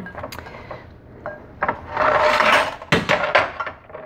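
Silicone spatula stirring and tossing moist stuffing in a glass mixing bowl: quiet faint scraping at first, then a louder spell of rustling scraping from about halfway, with a single sharp knock near the end.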